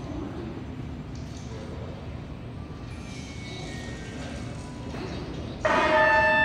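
Steady background hubbub of a large waiting hall, a murmur with faint distant voices. Near the end, loud music with held notes starts abruptly.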